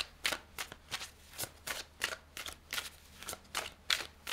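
A tarot deck being shuffled in the hands, cards slipping and slapping against each other in a quick, even rhythm of about three strokes a second.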